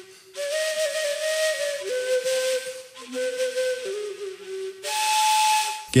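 Background music: a breathy flute playing slow, long held notes that step between a few pitches, with the airy noise of the blowing heard through each note.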